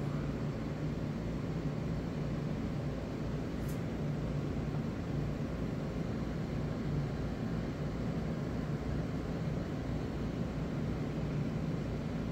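Steady low background hum of the room with no distinct event: a constant drone with a faint even hiss, the needle work itself making no audible sound.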